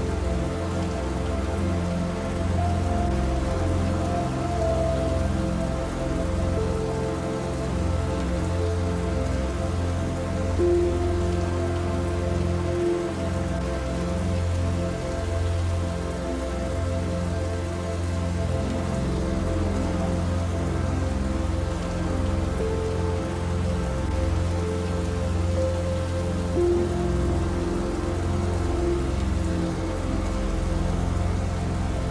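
Steady rain falling, an even hiss of drops, with soft slow background music of long held notes underneath.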